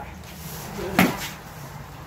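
Two toy swords clashing once, a sharp knock about a second in.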